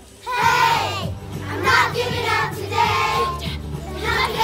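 A children's choir singing together over a steady low musical accompaniment, coming in after a brief lull at the very start.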